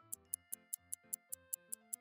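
Clock-ticking sound effect, about five quick ticks a second, counting off guessing time, over soft background music.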